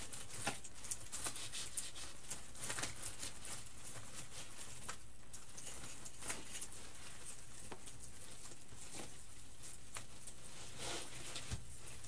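Artificial pine and berry picks rustling and crackling as hands work the bundle of stems, in scattered light clicks that thin out after the first few seconds.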